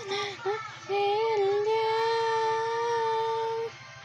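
A child singing unaccompanied: a few short broken notes, then one long held note that stops abruptly shortly before the end.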